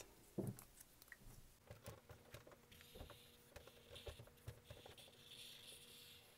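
Faint scratch of a black Sharpie felt-tip marker drawing lines on paper, heard as soft strokes through the second half, with a few light ticks earlier.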